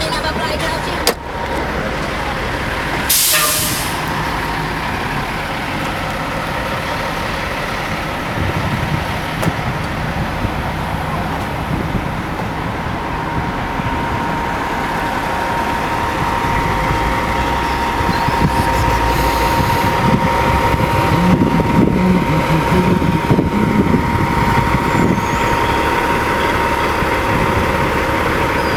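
Car engine running steadily with street noise, a sharp click about a second in and a short hiss about three seconds in.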